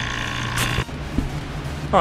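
Steady electric machine hum with a click about half a second in. The hum cuts off just under a second in, leaving a fainter low hum.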